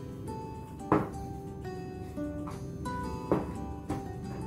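Background music with held notes, and two short knocks, about a second in and near the end, from the mixing bowl being handled on the cutting board.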